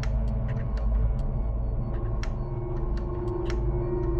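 Low, dark background music drone under a heavy rumble, with a new steady tone entering about halfway through. Scattered sharp clicks sound over it.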